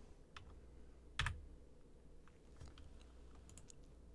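Low room tone with a few faint computer clicks, the clearest about a second in: keyboard and mouse clicks at the desk.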